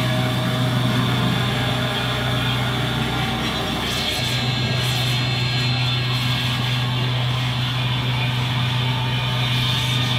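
Noise band playing live on keyboards and electronics: a loud, dense wash of noise over a steady low drone, which breaks off briefly about three and a half seconds in and then comes back.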